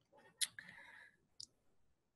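Near quiet, broken by two faint clicks about a second apart, with a brief soft hiss after the first.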